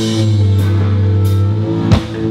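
Live rock band playing: a held, sustained chord on guitar, bass and keys under cymbal hits, broken by a sharp drum hit near the end.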